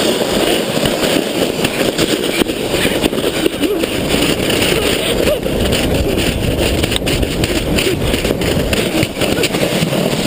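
Plastic belly sleds sliding fast down a snowy slope: a steady, loud rushing scrape of the sled bottoms over the snow, mixed with wind rushing over the moving camera's microphone.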